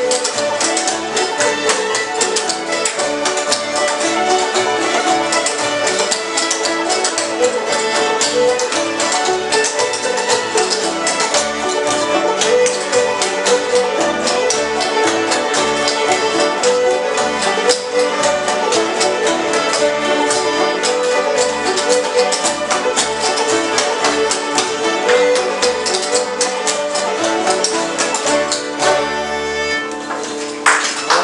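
Old-time string band jam: several fiddles playing a fast tune together over strummed acoustic guitars, with a steady, even rhythm. The tune winds down and ends about a second before the end.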